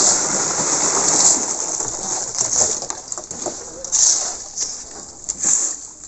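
Shovels scraping and turning a wet concrete mix by hand on the ground: a gritty scraping that is heaviest for the first couple of seconds, then comes in shorter strokes. A steady high hiss runs behind it.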